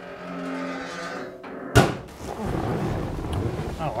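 Steel hood of a 1970 Ford Mustang Boss 302 being lowered, its hinges giving a long, slightly falling creak, then slamming shut a little under two seconds in. Softer rustling follows.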